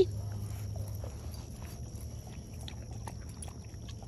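Chickens faintly clucking and moving about, with small scattered clicks, over a steady low hum.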